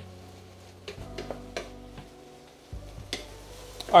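Wooden spatula stirring and scraping ground beef in a nonstick frying pan, in short strokes over a faint sizzle of the meat frying. The beef is nearly browned.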